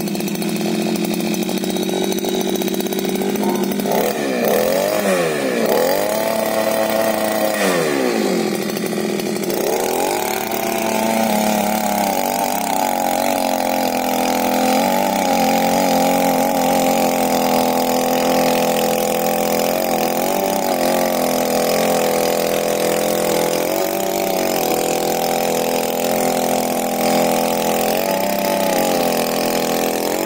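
Mini power weeder's small petrol engine catching as the starter cord is pulled. It runs fast, its pitch swinging up and down a few times in the first ten seconds, then holds high and steady with brief dips while the tiller tines churn through weedy soil.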